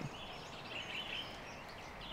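Quiet outdoor ambience with faint bird calls.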